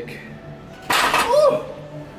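Metal clank of a plate-loaded preacher curl machine's weight being set down at the end of a set, coming suddenly about a second in, followed by a short vocal sound.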